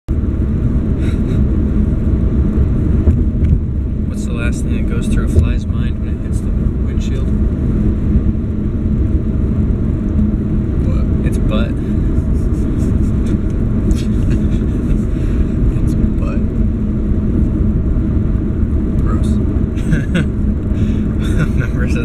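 Steady low rumble of a car's road and engine noise heard from inside the cabin while driving.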